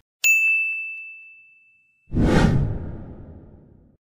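End-screen sound effects: a single bright ding that rings out and fades over about a second and a half, then, about two seconds in, a rushing whoosh that dies away.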